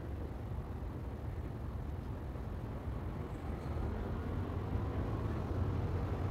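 Steady low rumble of vehicle engines and street traffic, growing a little louder in the second half.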